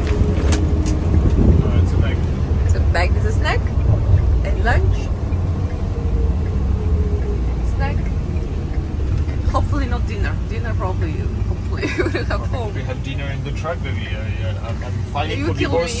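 Steady low engine and road drone inside the cab of a 15-foot Ford box truck driving at highway speed.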